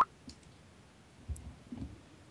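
Faint clicking: a few small clicks, then two soft, low knocks about a second and a half in.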